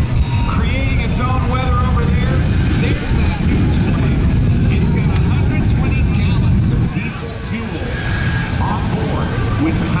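Shockwave jet truck's three Pratt & Whitney J34 jet engines running with afterburners lit: a loud, steady roar that eases a little about seven seconds in.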